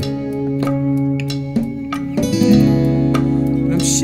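Instrumental passage of a singer-songwriter song: acoustic guitar strumming and picking over steady low notes, with a chord change a little past halfway.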